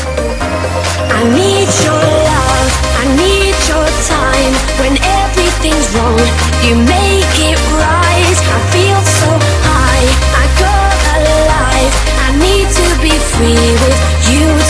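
Electronic dance music from a live DJ mix played through Pioneer CDJ decks and a mixer. It has a deep bassline that shifts note every couple of seconds, a melody that slides between notes, and a steady beat of percussion hits. It gets louder about a second in.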